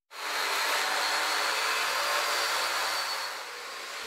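A handheld electric power tool running steadily during renovation work, a dense whirring noise with a thin high whine. It gets noticeably quieter a little after three seconds in.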